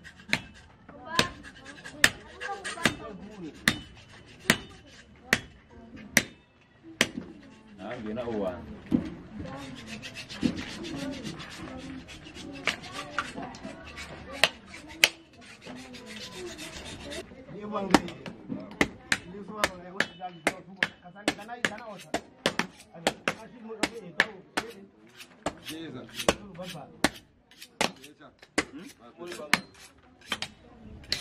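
Machete blows chopping through butchered meat and bone, a string of sharp strikes that come about once a second at first and faster later on, with a heavier blow about two seconds in and another about eighteen seconds in.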